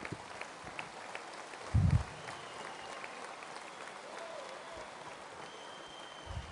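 Crowd applauding, a steady patter of clapping heard at some distance, with one short low thump about two seconds in.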